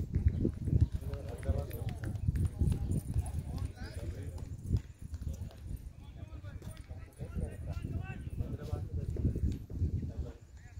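Indistinct distant voices over a low, uneven rumble.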